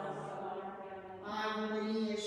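A single voice chanting liturgical text on long held notes. It eases off briefly just after one second in, then takes up a new, higher sustained note.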